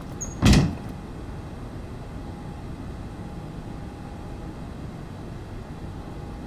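A single loud, brief bang about half a second in, over the steady hum of a machine room full of broadcast equipment.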